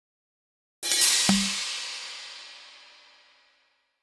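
Casino game sound effect: a sudden cymbal crash, then a drum hit with a low thud about half a second later, ringing out and fading away over roughly three seconds.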